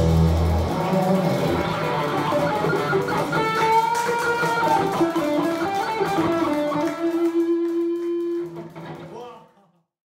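Live rock band at the close of a song: a held bass note and ringing chord stop about half a second in, then loose electric guitar notes and bends ring on, one note held near the end before everything fades out to silence.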